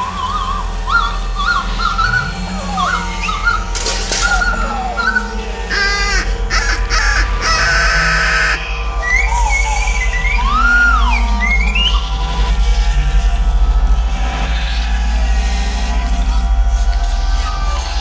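Contemporary music for solo recorder: quick wavering, bending and sliding recorder notes with squawk-like effects over a steady low drone, with a few short noisy bursts in the middle.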